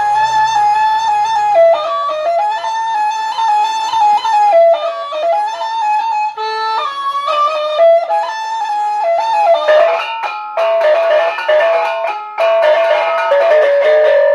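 Sasak gamelan of a gendang beleq ensemble playing: a held melody line steps between a few pitches over mallet-struck bronze kettle gongs and metallophones. About ten seconds in, the struck notes come sharper and thicker.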